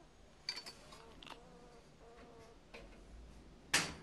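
A baby squirrel moving about over drop-ceiling tiles and ductwork: a few light scratches and clicks, then one sharper knock near the end.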